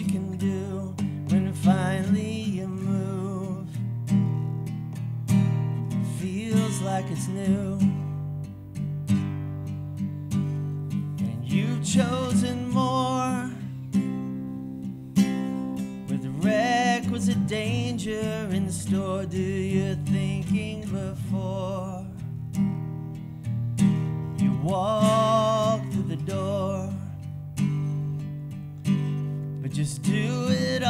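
Acoustic guitar strummed and picked through an instrumental passage of a country-folk song, with steady chord notes throughout. A wavering higher melody line comes in over it a few times.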